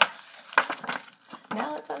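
Small hard objects clicking and clinking as they are handled: one sharp click at the start, another about half a second in, and a few fainter ones after.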